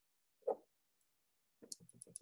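Faint button clicks from keying in a calculation: a single soft tap about half a second in, then a quick run of four or five clicks near the end.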